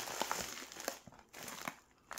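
Faint rustling and crinkling of plastic mailers being handled as a padded bubble mailer is pulled out of a poly shipping envelope, with small clicks; a short pause about a second in, then a brief rustle.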